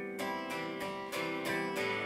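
Acoustic guitar strummed at a steady pace, about three strums a second, its chords ringing on between strokes.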